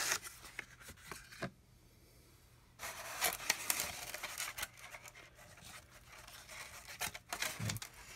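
Handling noises from a stick of chalk pastel and an egg carton: a few clicks and taps, a short quiet gap, then several seconds of scratchy scraping and rustling.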